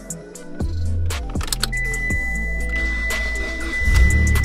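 Background music with a steady beat; a sustained high tone comes in about halfway through and holds.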